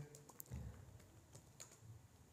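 Faint computer keyboard typing: a few scattered keystrokes as words are entered into a text box.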